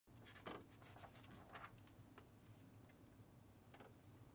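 Near silence: a few faint rustles of sheet music being adjusted on a music stand, over a low steady room hum.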